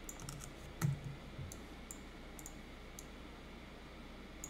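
Sparse, irregular clicks of a computer mouse and keyboard, a few clicks a second at most. One louder knock comes about a second in.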